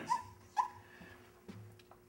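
Dry-erase marker squeaking on a whiteboard: two short squeaks as figures are written, then a faint click.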